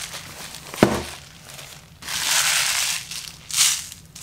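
A plastic packaging pouch being handled and crinkled. There is a sharp knock about a second in, then a loud crinkling rustle lasting about a second, and a shorter rustle near the end.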